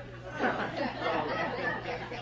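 Only speech: quiet, indistinct talking.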